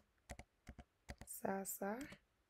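Computer keyboard being typed on: a quick run of about eight separate key clicks as a search term is entered.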